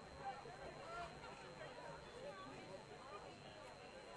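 Faint, distant voices of players and spectators calling and talking across an outdoor soccer field, no words clear, over a low steady background.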